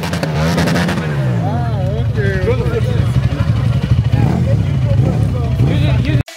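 Dirt bike engine running loud, its revs falling back about a second in and then holding at a steady pitch, with people's voices shouting over it.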